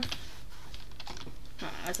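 Keystrokes on a computer keyboard, a short run of taps as a name is typed in.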